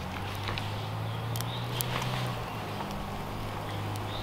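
Small twig fire burning in a metal rocket stove under a teapot, with a few sharp crackles, over a steady low hum.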